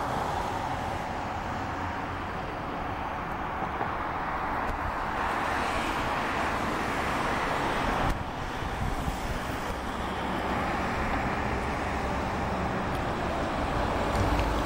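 Road traffic noise from the street: a steady hiss of passing vehicles that swells, as of a car going by, from about four to seven seconds in. The sound breaks off abruptly about eight seconds in, then the same kind of traffic noise carries on.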